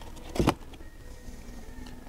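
A single knock about half a second in as a boxed shirt is handled against a cardboard display, over a faint steady background hum.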